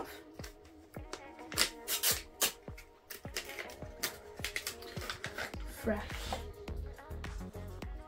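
A plastic pod pouch being torn open and crinkled by hand: many sharp, irregular crackles. Background music with a steady beat plays underneath.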